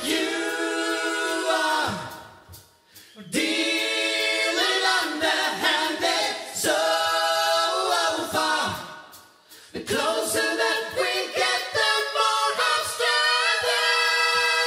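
Several male voices singing close a cappella harmony, with no instruments. The singing comes in phrases broken by two brief pauses, about two and about nine seconds in.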